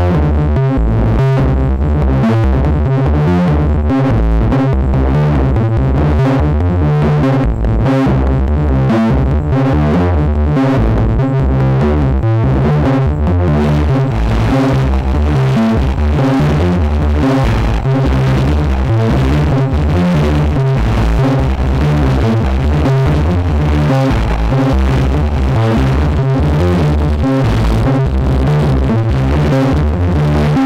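Analog synth voice of a kNoB Technology SGR1806-20 Eurorack percussion module, played as an arpeggio: a quick, unbroken run of short low-pitched notes. About halfway through, a brighter, hissier noise layer grows in over the notes.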